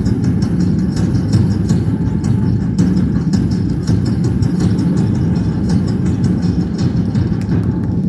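A loud, steady low rumble with faint, frequent ticking above it.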